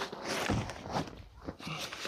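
Rustling and crinkling of a synthetic vapour-barrier membrane sheet as it is handled and pressed down over the floor joists, with a soft knock about half a second in.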